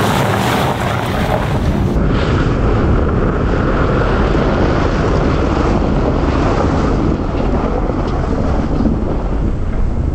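Steady rushing noise of an electric Tesla Model S's tyres on icy, packed snow, with no engine sound, and wind buffeting the microphone.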